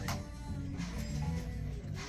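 Background music playing quietly, with low held notes and no speech.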